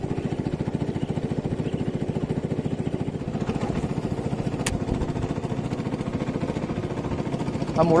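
Small boat motor running steadily with a fast, even putter. A single sharp click sounds a little past halfway.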